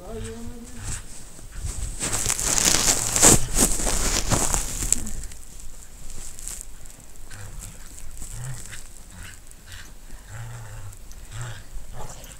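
Two dogs playing tug of war in snow, with low growls over a rope toy. A loud rush of rustling noise runs from about two to five seconds in.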